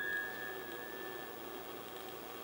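A single high note on a grand piano ringing out and fading away over about a second and a half. It is the last note of the piece.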